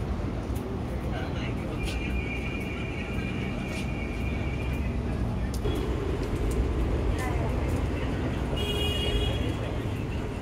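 Busy street-market ambience: indistinct crowd chatter over a steady low rumble of road traffic, with scattered clicks and a couple of brief high steady tones.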